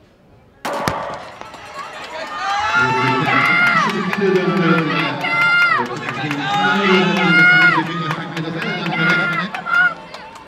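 Starting gun for a 100 m sprint, a single sharp crack about half a second in, sounded through the loudspeakers behind the starting blocks. It is followed by crowd noise that builds into loud shouting and cheering voices from about three seconds in as the sprinters race.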